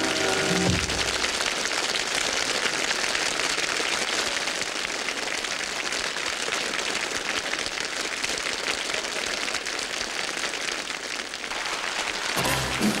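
A short musical sting ends under a second in. It is followed by steady studio-audience applause, an even clatter of many hands that holds until the end.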